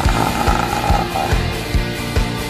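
Instrumental break of a rock karaoke backing track with no singing: a rapid kick drum beats several times a second under dense, full band sound.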